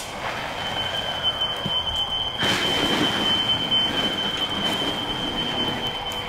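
Hand-held fire extinguisher discharging in a long, steady hiss that starts about two seconds in, over a steady high-pitched tone.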